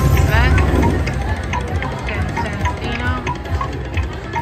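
Huff n' More Puff slot machine's bonus wheel: a burst of sound effects with quick sweeping tones as the wheel starts, then the wheel ticking about four times a second over the game's music.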